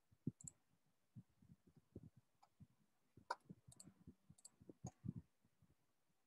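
Faint, irregular clicks and taps from computer use, about two or three a second, some sharper than others, picked up by a computer microphone.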